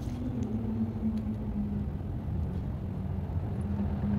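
Steady low rumble of vehicle engines on a city street, with a constant low hum running under it.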